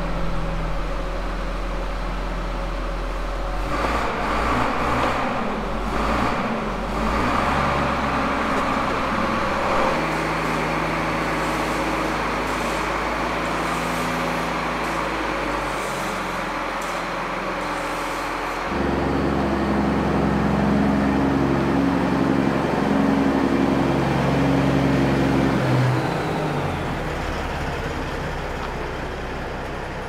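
Heavy diesel engines running inside a metal shop building as farm machines are moved. The engine note shifts up and down in steps, and it runs louder for several seconds past the middle.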